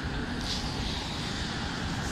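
Cars passing close by on a wet city street: a steady rumble of engines and tyre hiss on wet asphalt, with a brief louder hiss about half a second in.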